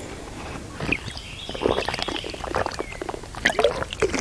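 A person taking a drink: liquid sloshing in a container and swallowing, with a few small handling knocks.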